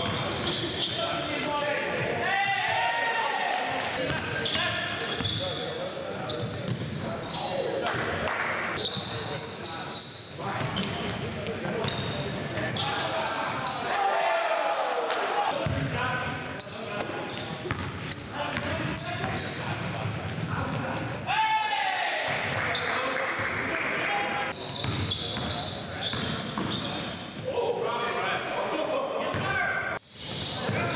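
Basketball being dribbled and bouncing on a hardwood gym floor, with players' indistinct shouts echoing in a large gymnasium.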